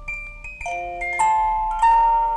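Music: a light tune of struck, ringing metal notes on a glockenspiel-like instrument, several notes in turn, each left to ring on.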